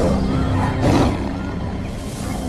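Tigers snarling as they fight, with a loud burst about a second in, over a low steady music drone.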